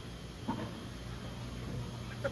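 Indoor market room tone: a steady low hum from the store's machinery, with a short faint voice about half a second in.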